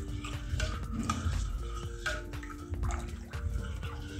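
Water sloshing and swirling as spiced jaljeera is stirred by hand in a glass bowl, with many short splashy strokes. Soft background music of held notes plays under it.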